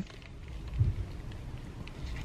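A man biting into and chewing a warm, soft biscuit dipped in barbecue sauce: faint mouth sounds over a low rumble, with one slightly louder moment a little under a second in.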